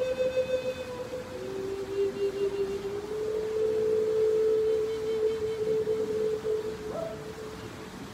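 Native American-style flute playing slow, long held notes: a note drops to a lower pitch about a second in, then rises to a note held for about four seconds that stops just before the end.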